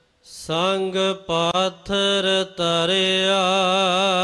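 Gurbani kirtan: a voice sings a line of a Sikh shabad. After a brief pause and a hissed consonant, the voice sings short syllables with gaps between them, then holds a long wavering note from about three seconds in.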